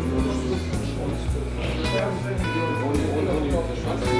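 Background music led by guitar over a steady low bass.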